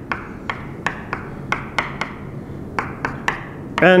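Chalk on a blackboard: a quick, uneven run of sharp taps, several a second, as small crosses are struck onto the board.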